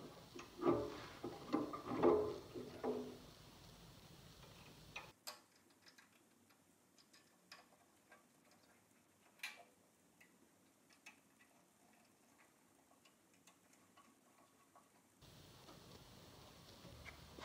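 Light knocks and clicks of a bracket being fitted by hand onto a drill press head. There is a busier clatter in the first few seconds, then only scattered single ticks.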